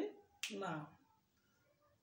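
A single sharp click, then a man saying one short word, then quiet room tone for about a second.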